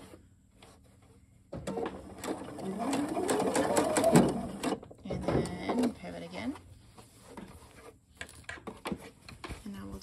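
Electric sewing machine stitching a straight seam, its motor rising in pitch as it speeds up and falling as it slows over about three seconds, then a shorter run of stitching a moment later.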